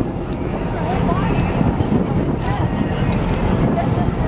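Steady low rumble of a boat's engine and wind on the microphone, with faint voices in the background.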